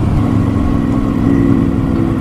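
Motorcycle engine running at a steady cruising pace, with wind and road rumble.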